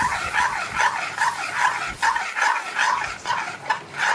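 Metal spoon scraping around a metal kadai while stirring thick dal, in a quick, even rhythm of about four strokes a second.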